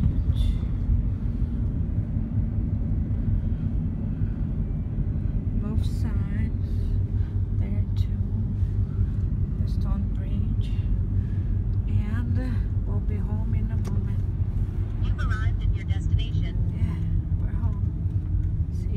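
Steady low rumble of a car's tyre and engine noise heard from inside the moving car's cabin, with faint voices now and then.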